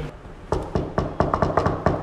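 Knocking on a door with the knuckles: a quick run of about ten raps in an uneven rhythm, starting about half a second in.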